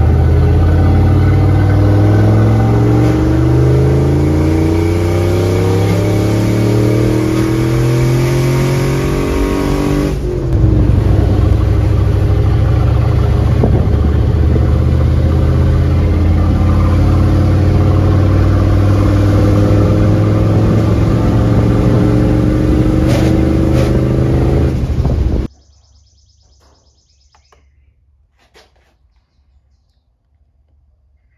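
Turbocharged 5.3L V8 of a Chevy Tahoe accelerating hard in a street roll-on test, heard from inside the cabin. The engine note climbs steadily for about ten seconds, falls back once, climbs again, and cuts off suddenly near the end.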